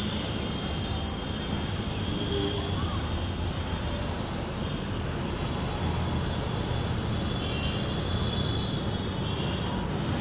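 Steady low rumbling background noise at an even level, with no distinct events standing out.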